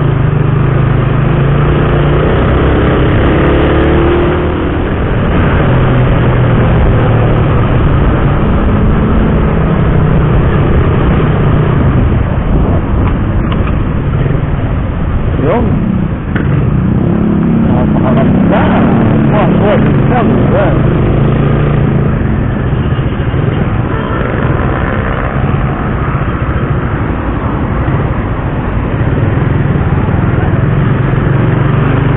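Motorcycle engine running on the move, its pitch rising and falling as the rider speeds up and slows, under steady road and wind noise on the camera microphone.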